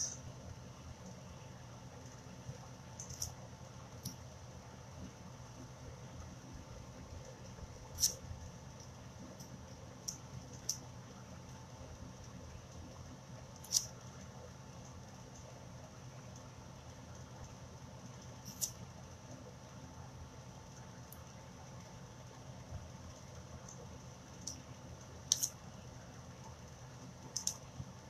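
Light, scattered clicks and taps of small craft tools and plastic applicators against a board, about eight in all at irregular intervals, over a steady low room hum.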